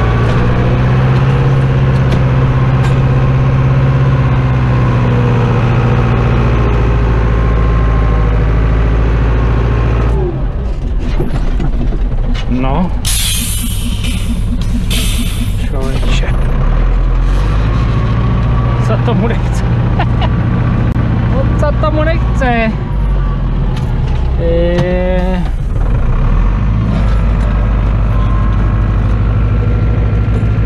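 Tractor diesel engine running steadily, heard from inside the cab. A loud burst of hissing comes about halfway through, and short wavering squeals come later on.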